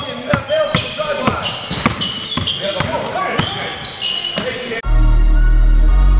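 A basketball being dribbled on a hardwood gym floor, giving repeated sharp thuds, with sneakers squeaking briefly and players' voices during a pickup game. About five seconds in, this cuts off suddenly and loud music with a heavy bass takes over.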